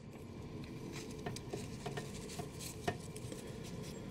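Faint plastic clicks and taps as a plastic backpack harness is handled and fitted onto an action figure, with one sharper click near the end.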